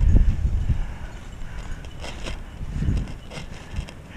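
Footsteps through long grass, with wind rumbling on the microphone and a few short brushing sounds around the middle.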